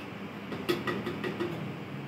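A ceramic pour-over dripper being handled on its glass server, giving a quick run of about five light clinks and taps in under a second, over a steady room hum.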